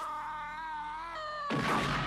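A man's drawn-out, wavering, high-pitched cry of pain, followed about one and a half seconds in by a sudden loud crashing noise.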